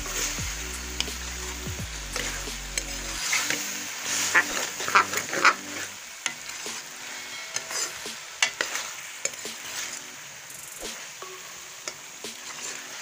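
Diced potatoes with green chillies and spices frying and sizzling in a metal pan while a spoon stirs and scrapes them. A run of sharp clinks of the spoon against the pan comes about four to six seconds in.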